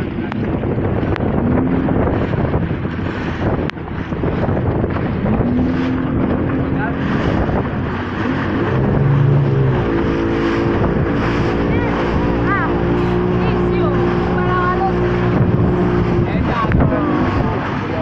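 A motorboat's engine running under way, with wind on the microphone and water rushing past the hull; about nine seconds in, the engine's pitch rises and then holds steady.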